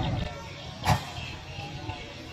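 A single sharp smack about a second in, a volleyball being struck, over steady crowd murmur.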